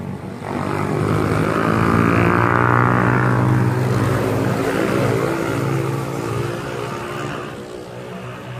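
A motor vehicle's engine running loudly close by with a steady drone, swelling up about half a second in and fading over the last couple of seconds.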